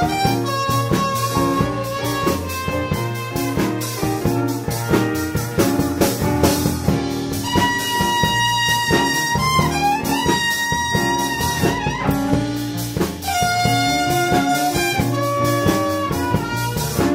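Live jazz band playing a slow blues, with a trumpet solo of long held notes and a few bends near the middle, over a bass line and drum kit with cymbals.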